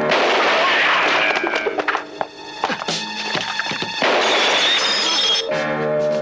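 Film soundtrack music with a few sudden knocks and thuds laid over it, mostly in the first half.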